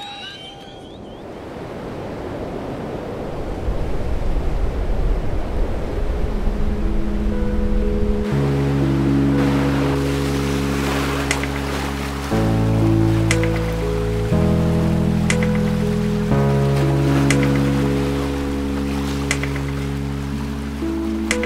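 A wash of ocean-wave noise that swells over the first few seconds, then background music comes in about eight seconds in: held chords over a low bass, changing every two seconds or so, with light high ticks.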